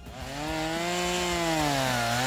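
A small engine running steadily, its pitch rising a little and then dropping near the end.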